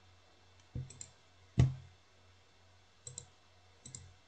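A few scattered, separate clicks typical of a computer mouse being used at a desk. The loudest is a sharper knock about a second and a half in, and there is a softer low one just before it.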